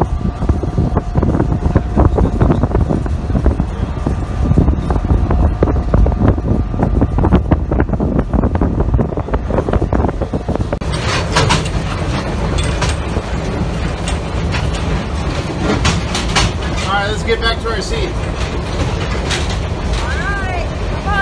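Passenger train running: a loud steady rumble with frequent clicks from the wheels and rails. From about eleven seconds in, people's voices are heard over the rumble.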